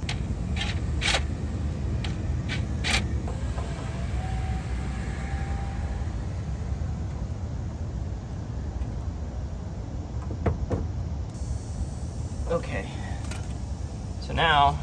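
A few sharp clicks and knocks of a screwdriver tightening hose clamps on a heater coolant hose, over a steady low background rumble.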